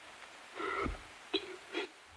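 A man drinking water in gulps: one short throaty gulp about half a second in, then two brief swallowing clicks.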